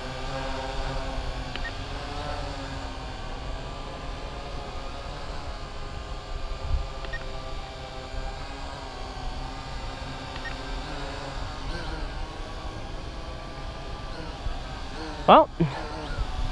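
Syma X8HG quadcopter's brushed motors and propellers humming steadily as it hovers on altitude hold, the pitch wavering slightly with small corrections, over a low rumble of wind on the microphone. A short, louder burst of sound comes near the end.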